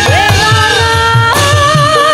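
Sinden, a Javanese female singer, singing through a microphone with sliding, wavering notes, over live band accompaniment driven by a fast, even drum beat.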